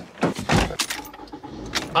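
Car door being unlatched and opened as someone climbs in, with a few clicks and knocks from the handle, the latch and the door.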